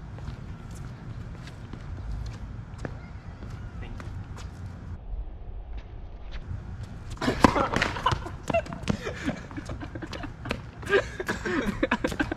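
Wind rumbling on the microphone with scattered light taps, then a sharp hit about seven seconds in, the tennis serve, followed by voices.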